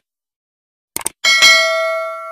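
Subscribe-button animation sound effect: a quick mouse click, then a bell ding that rings on and fades away.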